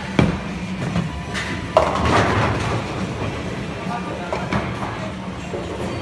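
Bowling ball set down on the wooden lane with a thud just after the start, then rolling down the lane with a low, steady rumble. A louder clattering crash comes about two seconds in, over background chatter.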